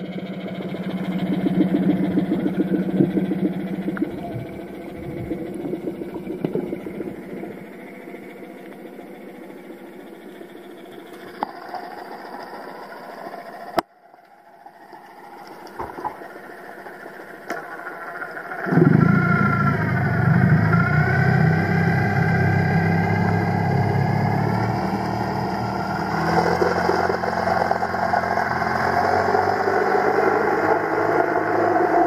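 Boat engine heard through the water by an underwater camera: a steady hum that breaks off about halfway, then returns louder and deeper for the last third.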